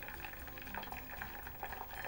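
Boiling water poured in a thin stream from a jug onto a Duplon foam rod handle, splashing off it and trickling into a bowl below.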